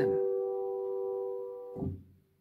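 Upright piano sounding a major third, G and B played together as one chord, its two notes ringing steadily and slowly fading. The chord is cut off near the end with a soft low thump as the keys are let go.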